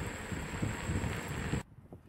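A Mercedes-Benz E-Class sedan driving off along a road, heard under heavy wind rumble on the microphone. The noise cuts off sharply about one and a half seconds in, leaving only a faint low rumble.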